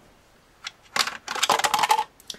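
A small plastic action figure dropped into a plastic toy playset's drop-in prison cell, clattering against the plastic: a single click, a sharp knock about a second in, then a quick run of rattling clicks near the end.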